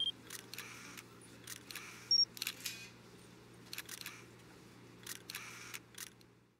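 Camera shutter clicks, mostly in quick pairs, recurring every second or so over a faint steady hum, with a short high electronic beep about two seconds in.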